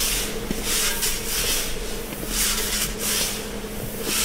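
Aluminium scoop shovels scraping and pushing shelled corn inside a steel grain bin, the kernels hissing and sliding in repeated swells, over a steady machinery hum.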